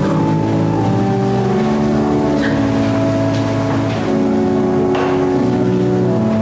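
Organ playing slow, held chords that move to a new chord every second or so.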